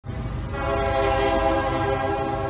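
Train horn sound effect: one long held chord over the low rumble of a passing train, swelling in over the first half second.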